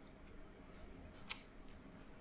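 Quiet room tone during a pause in speech, with one brief soft hiss a little past a second in.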